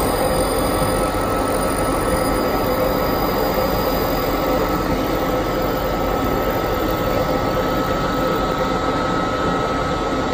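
Minute Key kiosk's automatic key-cutting machine milling a key blank: a steady grinding with a high, even whine held through the cut.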